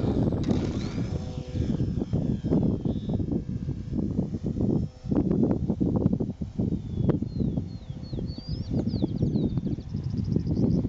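Wind buffets the microphone with a gusty low rumble throughout. About half a second in, the thin whine of a Parkzone Stinson RC plane's small electric motor rises as it throttles up for take-off, then holds steady for a couple of seconds. Near the end a bird chirps a quick series of rising notes.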